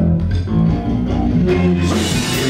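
Live rock band playing an instrumental passage: electric guitar over bass guitar and drums, with no singing.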